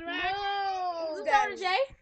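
A girl's voice in one long, drawn-out whiny "no" whose pitch sags slowly and then lifts, followed by a couple of quick syllables near the end.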